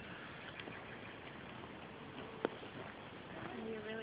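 Quiet outdoor background with a single sharp click about two and a half seconds in, and a faint voice near the end.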